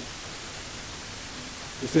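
Steady hiss of background noise in a pause in a man's speech, with his voice starting again just before the end.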